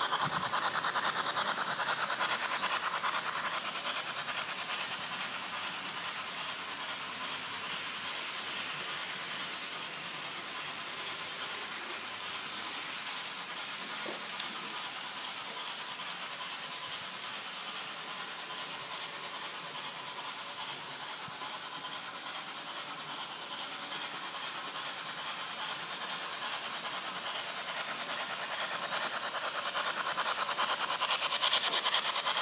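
Märklin H0 model train running on sectional track: a steady rattle and hum of its wheels and motor. Louder in the first few seconds and again near the end as the train runs close by, quieter in the middle while it is on the far side of the loop.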